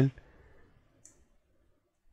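A single faint, short click of a computer mouse button about a second in.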